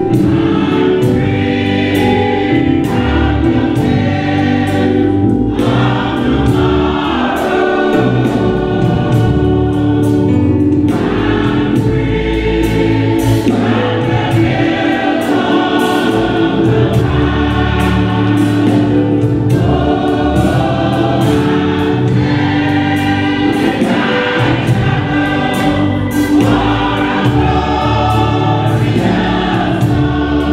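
Church choir singing a gospel song, mixed voices, over instrumental accompaniment with a steady beat.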